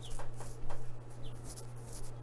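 Two short, high peeps from a few-days-old Rhode Island Red/ISA Brown chick, one at the start and one just past the middle, over louder rustling and light knocks from handling and footsteps. A steady low hum runs underneath.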